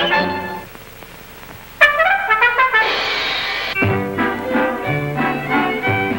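Brass-led theatre orchestra music on a 1930s cartoon soundtrack. A rising flourish stops about half a second in. After a brief pause the band strikes up again with a crash around three seconds in, then plays a bouncy tune over bass notes.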